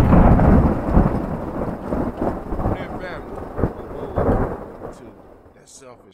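A thunderclap sound effect: a sudden loud crack followed by rolling rumble with a few sharper cracks, fading away over about five seconds.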